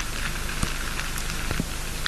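Underwater ambient noise: a steady hiss with a couple of faint clicks.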